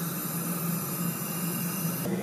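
Steady hissing noise with a low hum beneath it, unchanging throughout.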